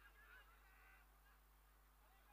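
Near silence: a low steady hum with faint, short distant calls over it.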